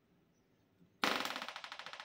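A Leeb hardness tester's D-type impact device fired onto a steel calibration block: a sudden sharp strike about a second in, running straight into a fast, even rattle of clicks that fades over about a second and a half as a hardness reading is taken.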